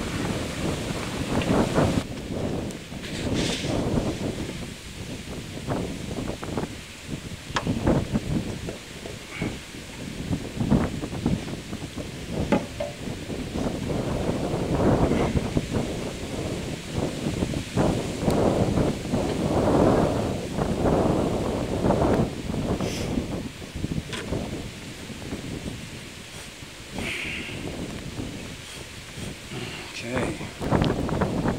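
Wind buffeting the microphone in uneven gusts, with a few light clicks and knocks.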